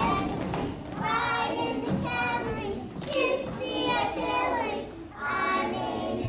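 A group of young children singing a song together in phrases of held notes, with short breaks between the lines.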